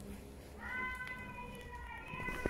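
A cat meowing: one long, drawn-out meow that starts about half a second in and sags slightly in pitch at the end.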